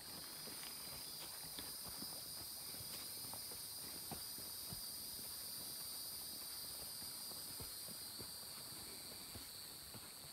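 Faint, irregular footsteps on a dirt path, over a steady high-pitched insect chorus.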